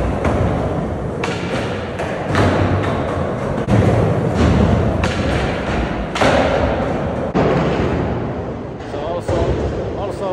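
Skateboard wheels rolling on smooth concrete, with a string of sharp clacks and thuds of the board popping, grinding onto a ledge and landing, every second or two, echoing in a large hall.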